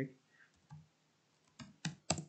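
A few keystrokes on a computer keyboard, single clicks spaced out, with two close together near the end.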